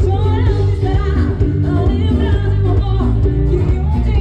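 Loud live band music with a lead singer over strong, steady bass.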